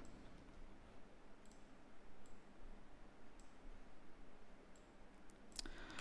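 A few faint, widely spaced computer mouse clicks over low background hiss.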